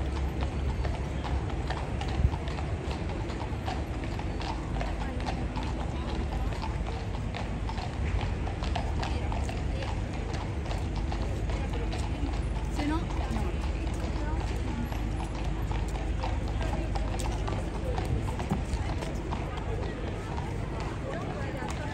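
Hooves of two police horses clip-clopping at a walk on a tarmac road, a steady run of sharp hoof strikes over a low background rumble.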